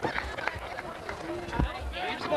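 Scattered short shouts and voices from a small outdoor crowd, with a few knocks and one low thump about one and a half seconds in.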